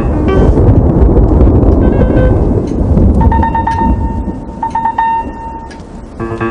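A long rumble of thunder, loudest in the first three seconds and then dying away, under background music that holds a few sustained notes in the second half.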